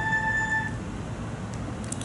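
A steady beep-like tone that cuts off suddenly under a second in, leaving only faint room hiss.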